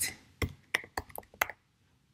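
Typing on a computer keyboard: about six separate key clicks at an uneven pace, stopping about a second and a half in.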